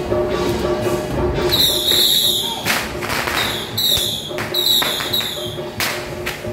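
Temple-procession music with a steady sustained tone underneath, overlaid from about a second and a half in by four short, high whistling tones and about five sharp bangs, typical of firecrackers going off.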